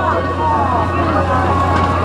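Many people's voices chattering and overlapping, over a steady low hum.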